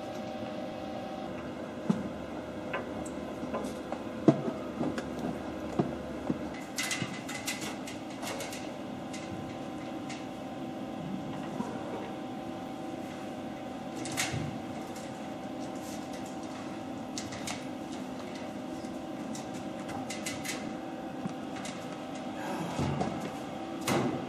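Steady electrical hum from running equipment, with a few scattered short clicks and knocks as hardware is handled.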